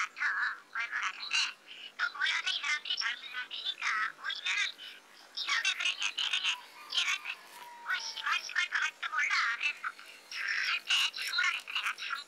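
A man speaking Korean through a voice disguise: his voice is shifted high and thin, with almost no low end, in quick broken phrases.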